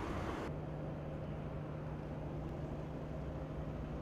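Distant city and harbour ambience: a steady low rumble of traffic. About half a second in, the higher hiss drops away and a steady low hum joins.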